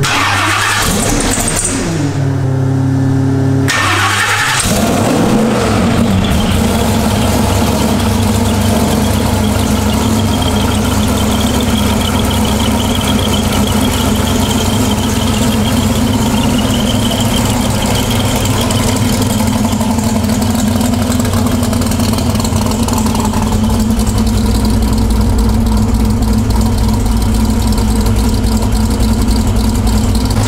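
Supercharged 427ci LS V8 with a 4.5L Whipple supercharger cranks over and catches at about four seconds. It then settles into a steady idle at around 870 rpm.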